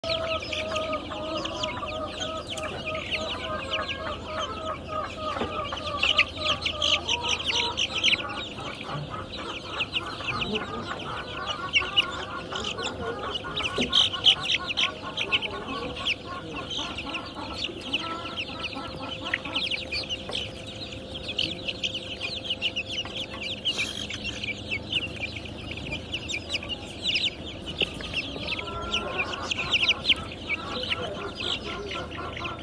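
A flock of five-week-old chicks peeping and cheeping continuously, many high calls overlapping, with some lower calls mixed in during the first several seconds and again near the end.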